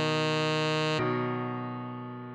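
Tenor saxophone holding a long melody note over a backing chord. About a second in the sax note ends and a keyboard chord rings on, fading away.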